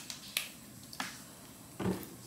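A few short sharp clicks of a small plastic water bottle being handled and capped, then a duller, louder knock near the end as a bottle is set down on a table.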